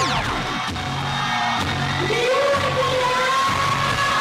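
Rock song with a driving beat and a man singing long, high held notes. It opens with a quick falling whoosh sound effect.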